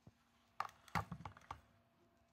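A quick run of about five light clicks and knocks within a second: handling noise from a plastic toy pod racer being moved on a glass shelf.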